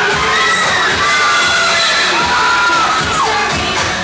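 A crowd screaming and cheering in high-pitched voices, many overlapping held shrieks; one long shriek falls away a little over three seconds in.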